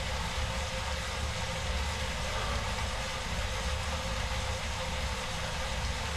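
Smart indoor bike trainer whirring steadily under pedalling: a constant low rumble with a faint hum.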